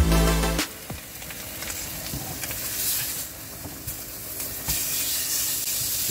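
Pork chops sizzling in a frying pan on a gas hob, a steady hiss. Electronic intro music with heavy bass cuts off about half a second in.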